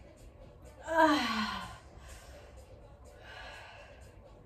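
A woman's voiced sigh of effort, falling in pitch, about a second in, followed by a quieter breath out near the end: hard breathing while circling a dumbbell around her head.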